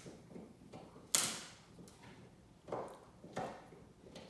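A wolfdog crunching a hard collagen chew stick in its back teeth: sharp cracking as the stick breaks, loudest about a second in, with two more cracks near the end.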